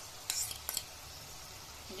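Steel spatula scraping curd out of a metal bowl into a kadhai, two short metallic scrapes in the first second, over the soft steady sizzle of masala paste frying in oil.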